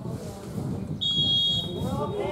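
Referee's whistle blown once for the kick-off: a single steady, high blast about a second in, strong for about half a second and then trailing off, over low voices on the pitch.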